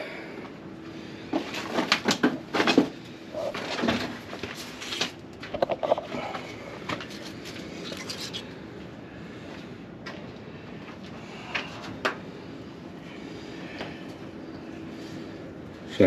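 Knocks and clunks of hands handling the parts of an old, parked tractor, with a close run of them in the first few seconds and only scattered clicks later on.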